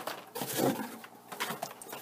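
Boxed toy figures in cardboard-and-plastic window packaging being handled and set down on a wooden table: a few light knocks and rustles.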